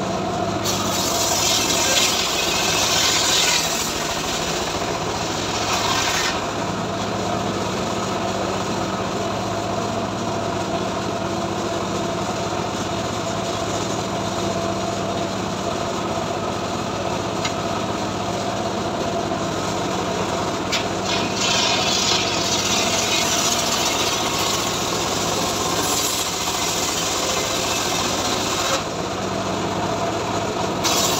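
Homemade srekel sawmill running with a steady low hum while its saw rips lengthwise through a mahogany log. There are two cutting passes: one over the first six seconds or so, and one through most of the last ten seconds. Between them the blade runs free.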